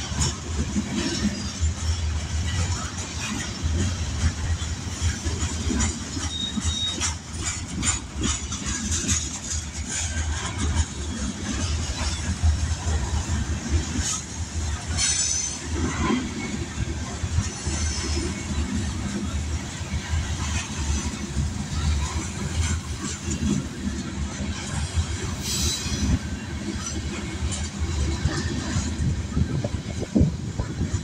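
Kansas City Southern freight train's covered hopper cars rolling past: a steady rumble of steel wheels on rail, with irregular clicks and clanks as the wheels run over the rail joints.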